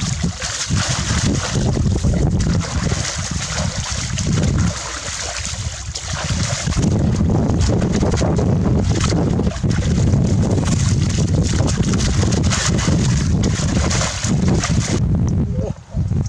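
Muddy water splashing and sloshing as people thrash their hands through a shallow ditch grabbing for fish, over a heavy rumble of wind on the microphone. The splashing stops suddenly near the end.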